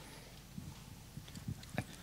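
Faint handling noise from a handheld microphone being picked up and raised: a few soft, short knocks and taps, the sharpest one near the end.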